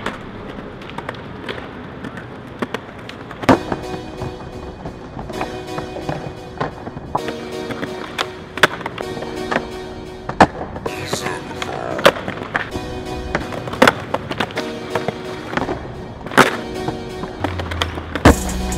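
Skateboards rolling on stone paving, with sharp clacks of boards popping and landing flatground tricks scattered throughout. Background music with sustained tones comes in about three and a half seconds in.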